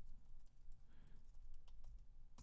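Faint typing on a computer keyboard: a run of quick, irregular keystrokes as a line of code is typed.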